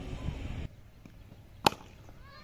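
A cricket bat striking the ball: one sharp crack about a second and a half in.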